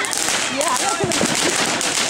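A ground fountain firework spraying sparks with a rapid, continuous crackle.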